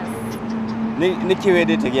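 Speech, a voice saying "yes", with a steady low hum running underneath.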